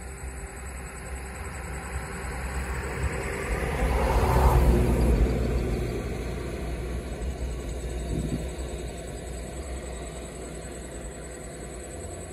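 Steady low rumble that swells to a loud peak about four and a half seconds in, then fades away again.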